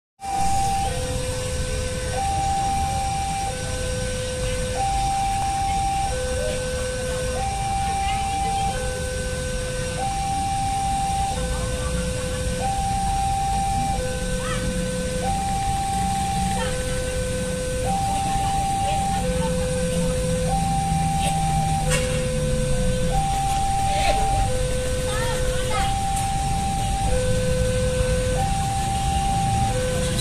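Railway level-crossing alarm sounding a repeating high-low two-tone signal, about one pair every two seconds, warning that a train is approaching while the crossing barrier is down. Low traffic rumble runs underneath.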